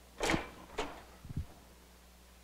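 A swing-away heat press being swung shut and clamped down on a garment. There is a loud mechanical rasp about a quarter second in and a shorter one just after, then a couple of dull knocks.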